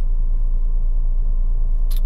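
Steady low rumble inside the cabin of a stationary car, typical of the engine idling, with a brief click near the end.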